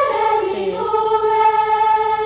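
Children's voices singing unaccompanied in unison: a sung phrase that settles on one long held note about half a second in.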